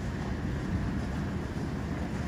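Steady low rumble of outdoor background noise, with no clear separate event.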